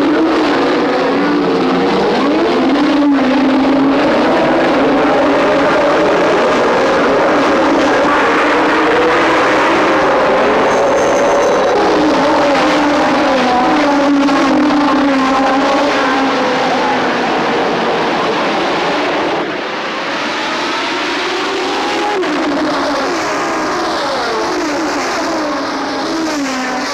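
A pack of 1970s Formula One cars running at high revs together, many engine notes rising and falling over one another as the field races away from the start. The level dips briefly about two-thirds of the way through, and near the end single engine notes glide past.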